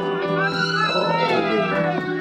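Live band playing, with a high lead line that slides and bends in pitch over a held low bass note.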